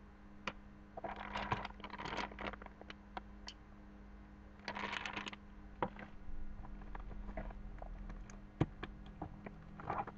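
Hands rummaging through packaging in a cardboard box: two spells of rustling and scraping of paper and plastic wrap, about a second in and again around five seconds, with scattered light taps and clicks and one sharper knock near the end. A low steady hum runs underneath.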